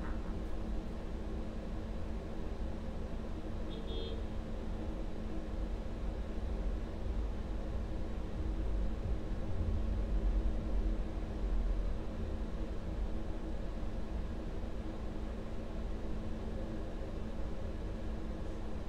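Steady low background rumble with a faint hum, swelling a little about halfway through. A short, faint high beep-like tone comes about four seconds in.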